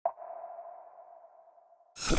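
A single electronic ping for an animated intro logo: a sharp attack, then one clear mid-pitched tone that rings and fades away over about a second and a half. A short, loud noise cuts in right at the end.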